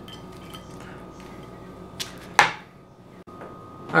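Faint steady room hum with a light click about two seconds in, then one short, sharp swish half a second later.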